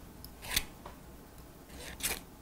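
Hair-cutting scissors snipping through a lock of hair: one sharp snip about half a second in and a fainter one just after, with the next cut closing right at the end.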